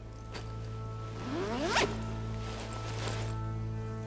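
A zipper pulled open in one quick rising stroke about a second and a half in, with a few softer rustling strokes before and after, over background music with sustained tones.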